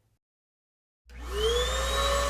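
A vacuum cleaner starts up about a second in, after silence. Its motor whine rises in pitch as it spins up and then holds steady over a low hum.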